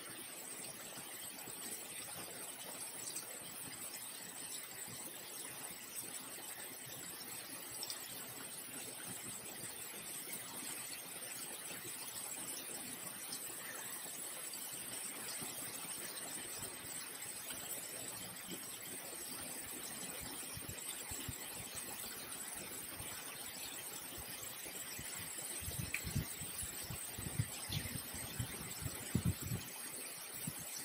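Faint scratching of a fine-tip Micron pen drawing small circles on a textured paper tile, over a steady low hiss. A few soft low thumps come near the end.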